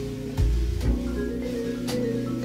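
Instrumental passage from a 1964 jazz-gospel recording: vibraphone over sustained organ and bass, with a couple of sharp drum hits.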